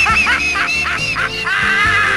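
A quick string of short, high, arched calls, about four or five a second, ending in one longer call, over background music.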